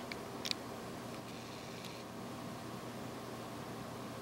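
Faint, steady hum and hiss of a desktop PC's cooling fans running while it boots, with one short click about half a second in.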